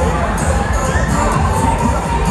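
Children on a spinning fairground ride shouting and screaming over loud music from the ride's sound system, which has a steady beat.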